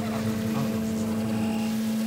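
Modular synthesizer drone: one steady low tone held throughout, with fainter steady higher tones above it.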